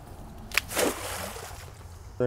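Cast net hitting the water surface: a sharp slap about half a second in, then a short spattering splash as its weighted edge comes down and sinks.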